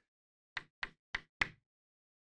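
Chalk tapping on a chalkboard while writing: four short, sharp taps about a third of a second apart.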